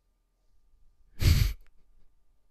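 A man's short sigh, a single breath blown out close to the microphone about a second in.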